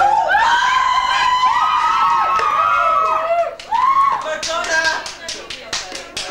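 Several high-pitched voices shouting or squealing at once, too shrill to make out words. Near the end comes a quick, irregular run of sharp claps.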